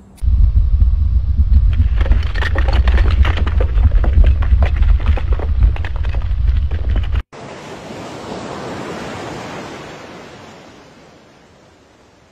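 Wind buffeting the microphone with scattered knocks and clicks, cut off suddenly about seven seconds in. Then a rush of noise swells and slowly fades away.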